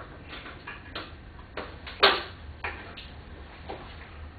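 Irregular small clicks and knocks of metal hardware being handled on a car door's mirror mount, with one sharp, loud knock about two seconds in.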